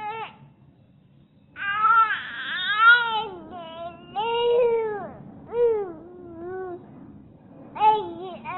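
Baby fussing: a string of short, whiny cries that rise and fall in pitch, starting about a second and a half in.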